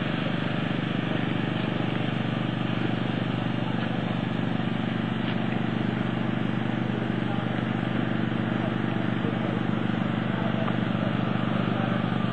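An engine running steadily at idle, an even low hum that does not change.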